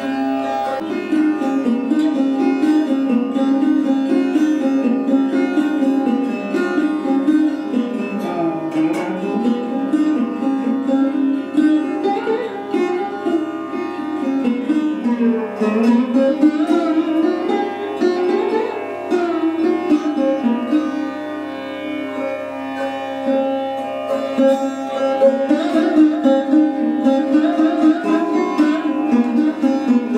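Sarod played in Hindustani classical style: plucked notes with long sliding glides between pitches over a steady low drone.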